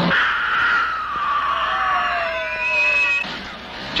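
A long, high scream, held for about three seconds with its pitch sinking slowly, then cutting off.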